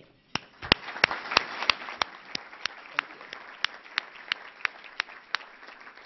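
Audience applauding, with one pair of hands close to the microphone clapping sharply about three times a second over the general applause; it dies away near the end.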